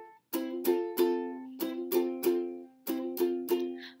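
Instrumental break of chords plucked on a small string instrument, a steady beat of about three strokes a second with two brief gaps, between sung verses.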